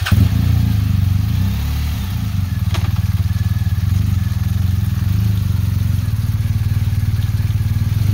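Motorcycle engines idling steadily.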